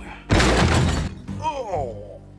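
A sudden loud crash lasting under a second, followed by a short cry that falls steeply in pitch.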